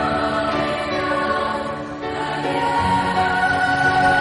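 Choral music: a choir singing long held chords, moving to a new chord about halfway through.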